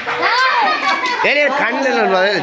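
A group of children shouting and calling out over one another, several high voices overlapping.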